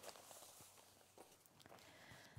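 Near silence: quiet studio room tone with a few faint ticks.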